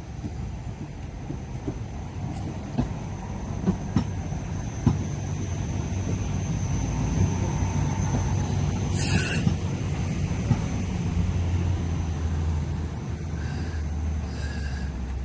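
Hong Kong Light Rail car rolling slowly past close by, its low rumble growing louder, with a few sharp clicks from the wheels on the track in the first five seconds. A short hiss comes about nine seconds in.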